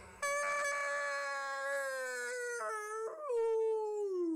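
One long wolf-style howl: a single held cry that sinks slowly in pitch, catches briefly a little past three seconds in, and slides down near the end.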